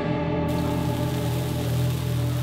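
Background music with steady held chords. From about half a second in, a steady sizzle of bacon strips frying in a pan runs under it.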